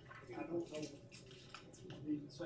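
Indistinct conversation: several people talking in a small room, too faint to make out the words, with a few small clicks.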